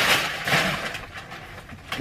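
Rustling and knocking as a cardboard shipping box is handled and pulled over, fading out about a second in, with a faint click near the end.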